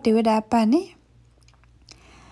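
A voice narrating in Karen that stops about a second in, leaving a faint pause with a few small clicks.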